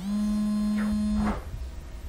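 A woman's voice holding one long sung note, sliding up slightly at the start, held steady for about a second and a half, then stopping abruptly.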